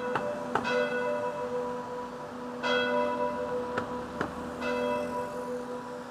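Church bells ringing for the end of the working day: a bell is struck about every two seconds and its ringing tones hum on between strokes.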